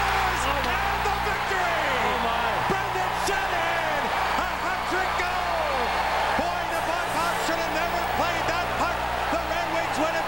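Hockey arena crowd noise right after an overtime game-winning goal: many voices shouting and whooping at once, over a steady low hum.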